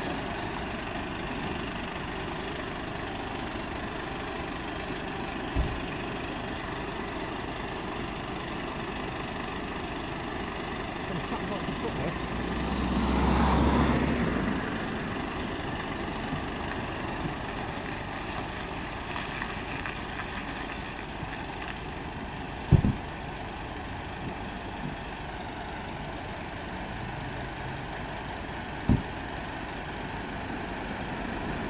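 Scania P270 fire engine's diesel engine running steadily, swelling louder for a couple of seconds near the middle. Three short sharp knocks stand out, the loudest about two thirds of the way through.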